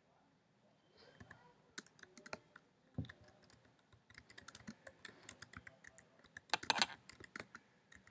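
Faint typing on a computer keyboard: an uneven run of short key clicks starting about a second in, with a quick, louder flurry near the end.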